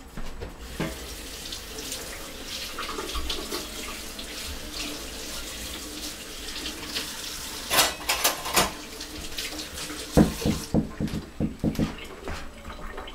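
Water running from a tap into a sink, with small clinks and knocks of things being handled in it and a louder clatter about two-thirds of the way in. Near the end comes a quick run of sharp thumps.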